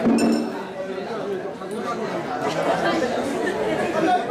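A crowd of people talking over one another, with light metallic clinking, sharpest about the first half-second.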